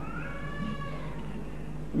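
A single drawn-out cat's meow, rising and then falling in pitch for about a second and a half, over a steady low electrical hum.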